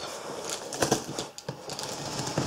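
Light clicks, taps and scrapes of scissors and fingers on a cardboard box as the scissors are set to the packing tape on its seam.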